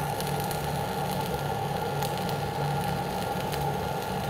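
Dual shield flux-cored arc welding with ESAB 7100 wire, the torch weaving a vertical fill pass: a steady arc sizzle with faint crackles throughout.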